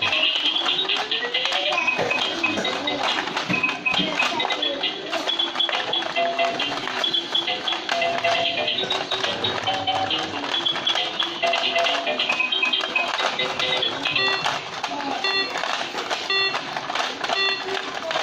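Battery-powered toy hot-pot game playing its electronic tune while its timer counts down, then a run of short, high beeps about twice a second over the last few seconds as the count nears zero.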